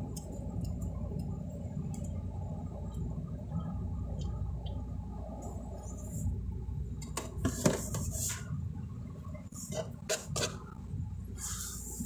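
A gearbox drain bolt being worked loose by hand with light metallic clicks and a few knocks, as gear oil starts running out of the drain hole into a catch pan. A steady low hum runs underneath.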